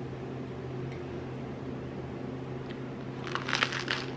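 A butter knife scraping across a toasted English muffin, light crackly scrapes of the blade on the crust, with a louder burst of scraping and clatter near the end as the plate is handled, over a steady low hum.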